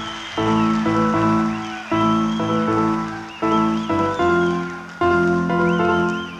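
Electric keyboard playing the intro of a live rock song: sustained chords struck in phrases about every second and a half, each dying away before the next.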